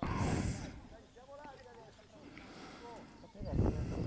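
Faint distant voices of players and coaches calling out across a youth football pitch. There are two bursts of low rumble on the microphone, one at the very start and a louder one near the end.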